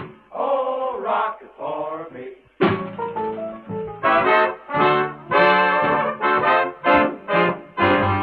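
A 1930s swing band recording playing instrumentally, its horns dominant. From about two and a half seconds in they play short punchy chords, roughly two a second. The sound is dull and narrow, typical of a 1938 disc.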